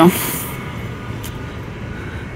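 Steady ambient hum of a large indoor space, with no distinct events, after a last spoken word at the very start.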